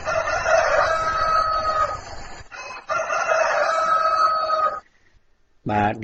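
Two long pitched animal calls, each about two seconds, the second starting about half a second after the first ends. Each call ends on a held high note.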